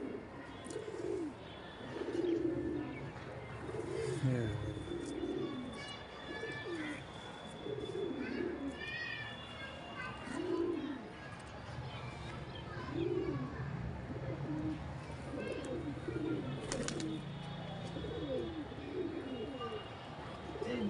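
Domestic pigeons cooing over and over, low coos that rise and fall, one every second or two, with a few short higher chirps above them.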